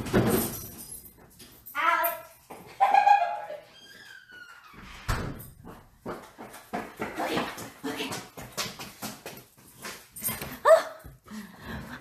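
A pet dog barking in short bursts, with some whining, while people talk in the background.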